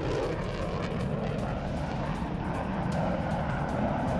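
Steady engine noise of a fighter jet in flight, with a background music bed underneath.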